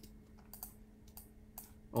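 Faint, scattered clicks of a computer keyboard and mouse.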